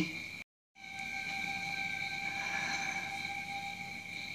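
Film soundtrack played from a VHS tape: the sound cuts out completely for a moment near the start, then a held, steady music note comes in under a constant high whine and slowly fades.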